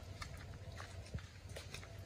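Faint footsteps on a wet dirt path, a string of soft irregular steps over a low steady rumble.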